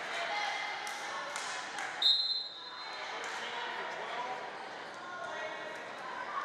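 Volleyball referee's whistle: one short, shrill blast about two seconds in, over a gym's chatter of voices and a few sharp knocks of balls and feet in the echoing hall.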